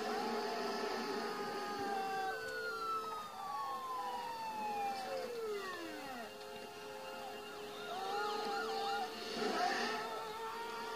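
Emergency-vehicle sirens wailing in a film soundtrack played through a television, with long pitch glides that fall over a few seconds and a steady held tone underneath.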